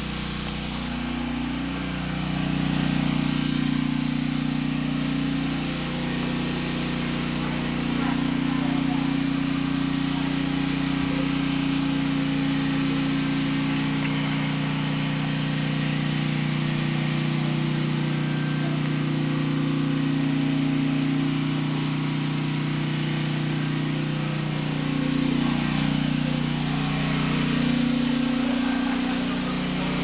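Portable generator engine running steadily, a constant hum whose pitch shifts slightly a couple of times as it takes up load.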